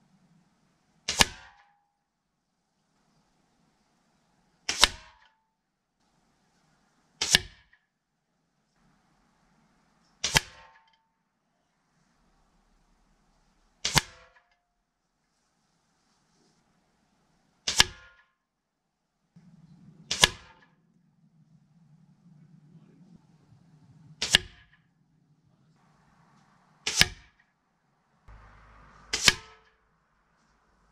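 A Hatsan 6.35 mm (.25 calibre), 20-joule break-barrel air rifle firing about ten shots at a hanging soda can, one every three seconds or so. Each shot is a short, sharp crack.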